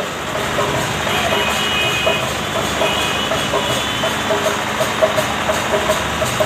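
Busy street noise: a small goods truck's engine idling close by and scooters passing, under crowd voices and faint devotional chanting from a loudspeaker.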